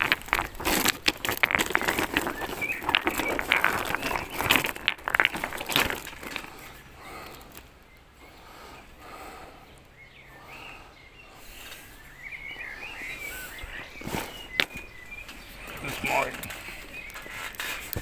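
Close handling noise of rocks and a plastic bag: rustling and knocking, busiest in the first six seconds, then quieter, with a single sharp click about three-quarters of the way through.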